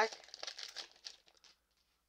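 Foil wrapper of a Pokémon Fusion Strike booster pack crinkling as the torn-open pack is pulled apart and the cards are slid out, dying away about a second and a half in.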